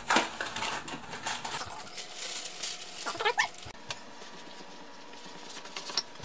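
A spoon stirring dry brownie mix in a glass mixing bowl, with quick scrapes and taps against the glass that are densest in the first two seconds. A short rising whine comes about three seconds in.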